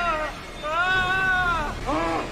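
A man's strained, high-pitched wailing cries, muffled by a cloth bitten between his teeth: one long drawn-out cry through the middle, then a shorter one starting near the end.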